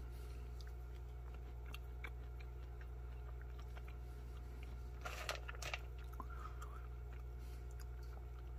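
Faint chewing of a piece of dried fruit, with a few small clicks about five seconds in, over a steady low hum.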